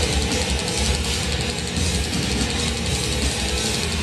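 Death metal band playing live: heavily distorted guitars and bass over drums, dense and loud without a break, heard from within the crowd.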